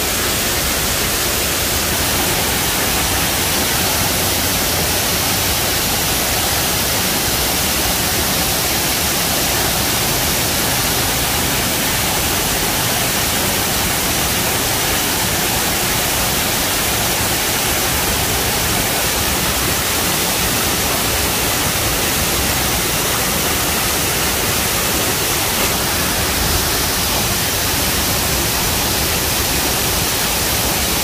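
Man-made waterfall: water pouring over a concrete ledge into a canal and splashing onto rocks, a loud, steady rushing with no change.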